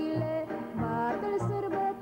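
A woman sings a traditional Romanian folk song from Bistrița-Năsăud in an ornamented, sliding melody. A band accompanies her with a steady bass-and-chord beat, about two beats a second.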